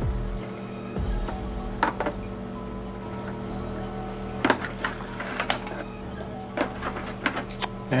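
Steady background music, with a scatter of short sharp clicks and taps from metal tongs moving oxtail pieces into a foil pan of braising liquid. The loudest clicks come a little past the middle.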